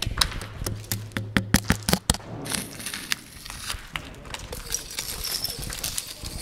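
A stick tapping and scraping against a crumbling, painted plaster wall: a quick run of sharp taps for about two seconds, a short scrape, then scattered lighter taps.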